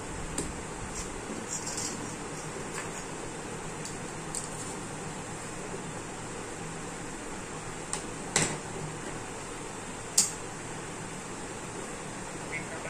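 Light taps and clicks of scissors, a metal ruler and a paper strip being handled on a wooden table, over a steady background hiss. The loudest taps come about eight and ten seconds in.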